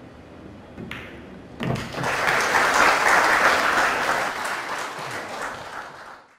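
Audience applauding in an arena, building up about one and a half seconds in after a sharp knock, then fading toward the end.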